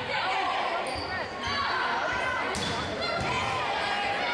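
Volleyball rally in a gym: several voices calling out over one another, with thuds of the ball being struck and bouncing, echoing in the hall.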